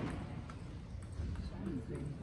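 A table tennis ball struck with a sharp click on the serve, then a couple of fainter ticks of the ball about half a second and a second later, over low voices in the hall.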